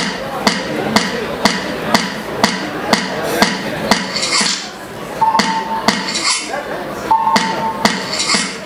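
Electronic dance music in a club with a steady four-on-the-floor beat of about two beats a second. From about four seconds in, a cymbal-like swish and a short, steady, high synth tone each repeat every two seconds.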